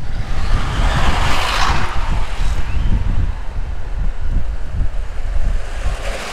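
Wind rushing over the microphone of a moving motorcycle, over a steady low rumble of engine and road noise. The rush swells about a second in and eases off after.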